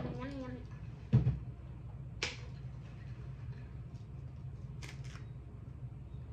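Tableware and a drink tumbler handled on a table: a dull knock about a second in, then a few sharp clicks, over a steady low hum.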